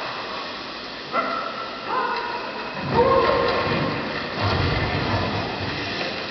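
Soundtrack of a projection-mapping show played over outdoor loudspeakers: electronic sound effects, with sustained tones starting about one, two and three seconds in, a falling glide around three seconds, and deep rumbles near three and four and a half seconds.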